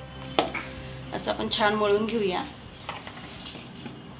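A hand mixing and kneading pumpkin-and-flour dough in a stainless steel bowl, with knocks and scrapes against the metal. There is a sharp knock early on, and a brief wavering pitched sound, the loudest part, in the middle.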